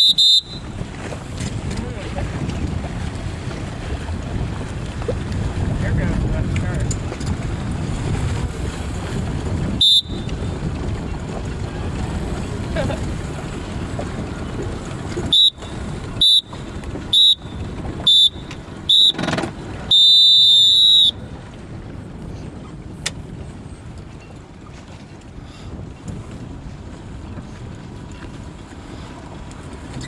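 Race start countdown sounded as high electronic beeps: a single beep, another about ten seconds later, then five short beeps a second apart and one long tone at the start signal. Steady wind noise on the microphone lies underneath and eases after the long tone.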